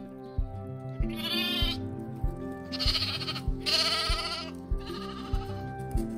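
Young lambs bleating four times, quavering calls starting about a second in and running to near the end, the middle two the loudest. Under them runs background music with a steady beat.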